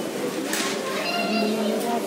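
Indistinct background voices talking, low and steady, with no clear words.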